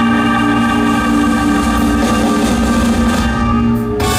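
Live rock band (electric guitars, bass, keyboards and drums) holding one loud sustained chord, the closing chord of the song, which cuts off abruptly at the very end.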